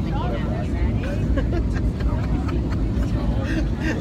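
Airliner cabin noise: a steady, loud low rumble, with faint voices in the background.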